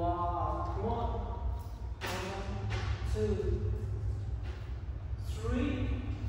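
Mostly speech: a voice speaking in three short phrases, over a steady low hum.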